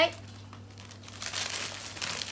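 Clear plastic bags crinkling as clothes are handled, a rustle starting about a second in and lasting about a second, over a low steady hum.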